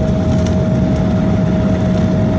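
Steady cabin noise of an Embraer 175 jet taxiing: a low rumble from the engines at taxi power with a single constant-pitch whine running through it.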